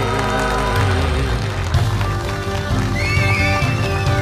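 Mongolian folk ensemble of morin khuur horsehead fiddles and yatga zithers playing an instrumental passage that turns rhythmic about a second in. About three seconds in, a high wavering glide like a horse's whinny rises over the music.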